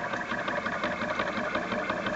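Stepper motors of a CNC Shark Pro Plus router driving a touch probe through a slow scan, a steady mechanical buzz with faint rapid ticking.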